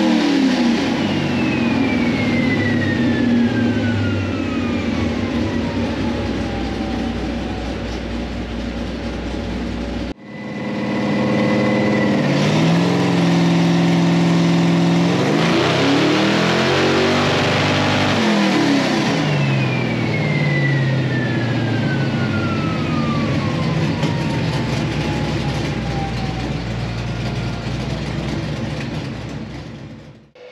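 Plymouth Superbird's 543-cubic-inch V8 run hard on a chassis dyno, revving up through pulls and then coasting down. A whine falls steadily in pitch as the drivetrain spins down. An abrupt cut about ten seconds in joins two runs; the tuner reports the engine missing slightly under heavy load and the transmission's torque converter slipping when more power is applied.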